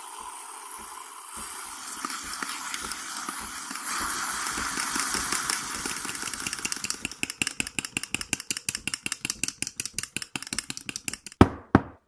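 Mr. Coffee espresso machine's steam wand frothing milk in a stainless steel pitcher: a steady hiss that grows louder about four seconds in, then turns into a fast pulsing of about five strokes a second. A sharp knock near the end.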